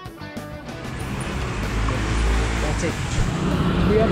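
Guitar background music fades out in the first second as street traffic noise rises; a vehicle rumbles past about two seconds in, and voices come in near the end.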